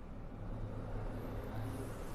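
A steady low rumble and hum.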